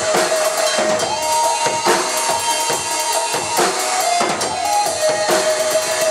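A Pearl drum kit played fast: rapid bass drum, snare and cymbal hits. It is played along to a drum-and-bass backing track whose held synth notes sound under the drums.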